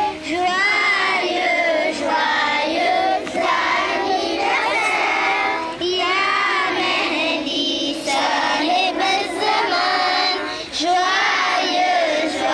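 A group of children singing a devotional song together, in sung phrases broken by short pauses between lines.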